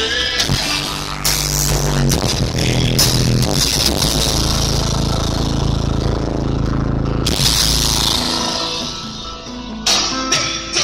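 Loud music with heavy, sustained bass notes, played through a custom car audio system with multiple door-mounted woofers and pillar tweeters.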